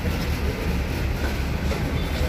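A steady low rumble with an even rushing noise over it, unchanging throughout.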